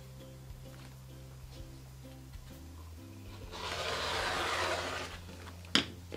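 A rotary cutter rolled along a ruler, slicing through a fabric strip on a cutting mat: one noisy scrape lasting about a second and a half, past the middle. Near the end a single sharp click, as of the cutter being set down on the mat, over faint background music.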